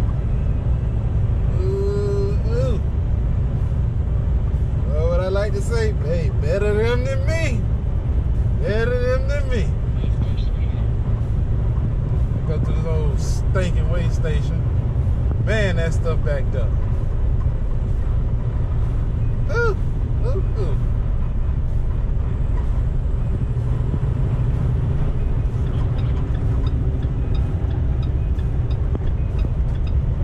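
Steady low rumble of a semi-truck's cab at highway speed, engine and road noise together. A voice comes and goes over it several times in the first two-thirds.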